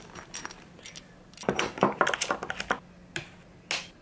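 Small hard objects being handled, clicking and clinking irregularly as gear is moved about. The clicks bunch together in the middle, and one sharper click comes near the end.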